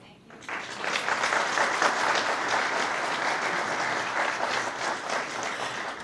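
Audience applauding: many people clapping in a steady patter that starts about half a second in, after a short hush, and eases a little near the end.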